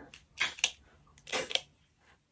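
Quick hissing drags on a small handheld vape, then an exhale of vapour, with a couple of faint clicks.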